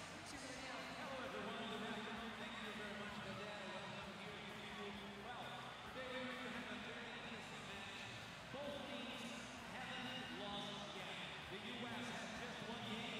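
Game sound of a wheelchair basketball match in play: a steady wash of voices from the crowd and court, with a basketball bouncing on the hardwood floor.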